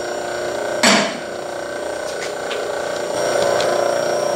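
Rhodes metal shaper turning slowly on a temporary right-angle gear drive: a steady mechanical hum with several whining tones, growing a little louder near the end. About a second in, a single sharp clank as the access cover over the bull gear is shut.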